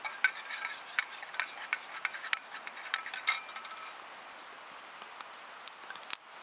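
Metal spoon stirring in a metal cup, clinking against the sides about three times a second, each clink ringing briefly; the stirring stops about four seconds in.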